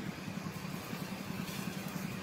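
A steady low engine hum, as of a vehicle idling, under a faint even hiss.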